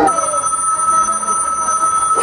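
Telephone ringing in the recorded backing track, a steady high ring that starts as a voice breaks off.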